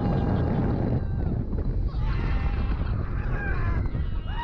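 Rush of wind on a GoPro microphone aboard a moving roller coaster train. Riders' screams rise over it in the second half.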